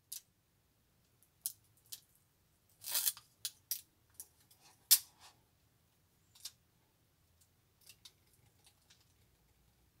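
Faint crinkling and small clicks of a thin adhesive shim film being handled and wrapped around a metal rod by fingers. The sounds are sparse and brief, with a short cluster about three seconds in and the sharpest click about five seconds in.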